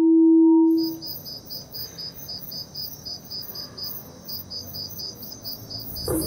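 A steady ringing tone fades out about a second in. Then insects chirp in a fast, even, high-pitched pulse of about five chirps a second.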